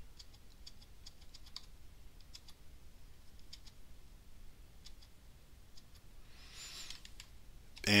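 Faint, scattered key presses on a computer keyboard, a few clicks at a time with pauses between, as a file is scrolled in a terminal text editor. A short soft hiss near the end.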